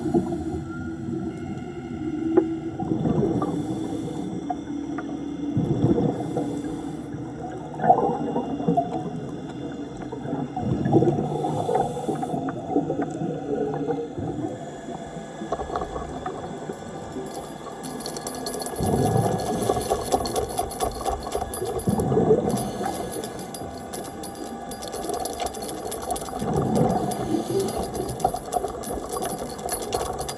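Underwater scuba breathing through a regulator: exhaled bubbles rush and gurgle in surges every few seconds, over a steady low hum with faint steady tones.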